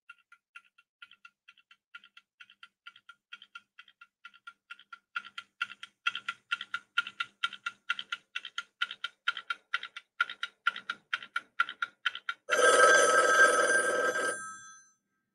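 Countdown timer sound effect: quick, even ticking at a few ticks a second, growing louder about five seconds in, then an alarm bell ringing for about two seconds near the end as the 15-second countdown runs out.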